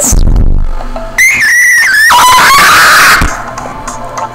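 A person singing along to a song in a loud, shrieking falsetto, close to screaming. A very high note is held from about a second in, then drops to a lower held note before cutting off near the end.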